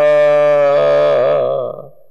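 A man's voice holding a long chanted note at the end of a line of Gurbani. The note breaks into a wavering ornament about halfway through and fades out near the end.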